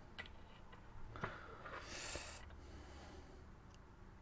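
Quiet soldering at the bench: a few faint ticks of metal tweezers and a soldering iron tip against a small key-fob circuit board, with a short hiss about two seconds in.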